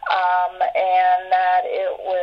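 A woman's voice singing three long held notes at a level pitch, one after another.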